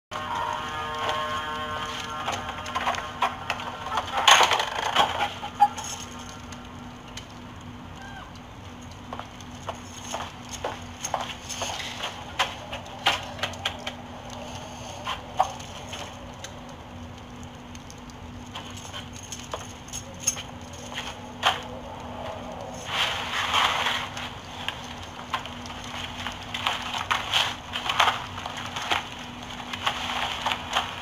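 Scattered soft knocks, clicks and cloth-and-leather rustling of someone moving about a room and searching through belongings, louder around four seconds and again a little after twenty seconds, over a steady low hum.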